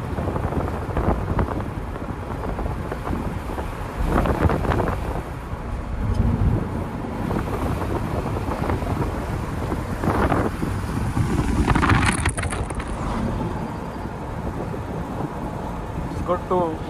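Road noise inside a moving car's cabin: a steady low rumble of tyres and engine, with a few louder swells of rushing noise.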